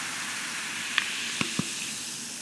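Sparkling water fizzing in a glass: a steady hiss of bubbles, with a few sharp little clicks around the middle.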